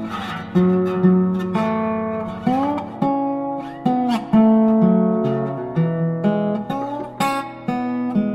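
Background music: an acoustic guitar playing a melody of single plucked notes that ring and fade, with a few slides between notes.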